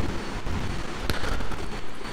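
Steady hiss and low rumble of room and microphone noise, with a single sharp mouse click about a second in.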